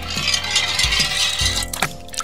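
Small toy road-roller car rolling fast down a hard slide with a steady rattle, ending in a sharp hit near the end as it drops into the water.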